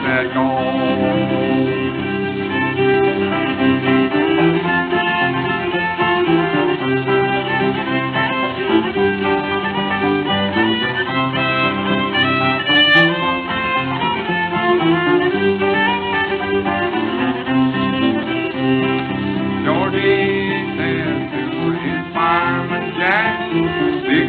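Instrumental break in an old-time string band song: a fiddle carries the melody over a rhythmic string accompaniment. The sound is narrow-band, like an early recording.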